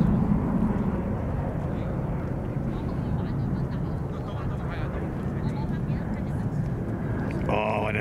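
Distant jet engines of two Boeing 737 airliners at takeoff power during their takeoff rolls, a steady low rumble that eases slightly.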